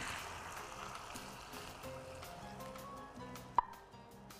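Soft background music under a faint, fading sizzle from the hot frying pan as cooked head meat is spooned out of it. One sharp knock of the wooden spoon against the pan comes about three and a half seconds in.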